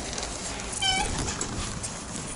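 A single brief, high-pitched squeak about a second in, over rustling handling noise.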